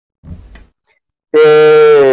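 A man's voice holding one long, level drawn-out syllable, 'te', that starts loud about a second and a half in, after a short pause.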